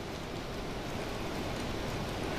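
Steady, even hiss of background noise: the room tone of a hall picked up through the microphone, with no distinct event.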